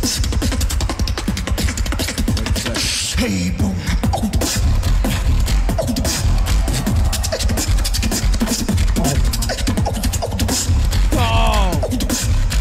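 A beatboxer performing live: a dense run of vocal kick drums, snares and crisp clicks over a constant heavy bass, with pitched vocal sweeps, one near the end.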